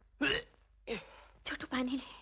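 A person's voice in a few short bursts without clear words.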